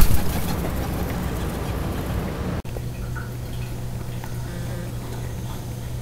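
Steady outdoor background noise from a high balcony, a hiss with a low hum underneath, broken by a brief dropout about two and a half seconds in.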